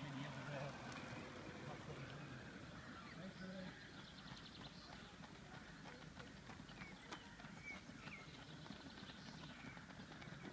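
Faint outdoor ambience of distant people's voices, with a few short chirps about seven to eight seconds in and light footsteps on gravel that grow more frequent in the second half as runners draw nearer.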